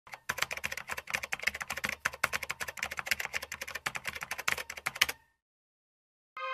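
Rapid, irregular clicking, many clicks a second, that stops abruptly about five seconds in.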